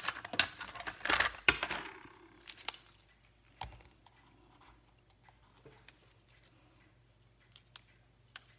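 Cardstock rustling and sliding on a craft mat in a brief burst about a second in. Then come scattered faint clicks and taps as a roll of dimensional foam adhesive is picked up and handled.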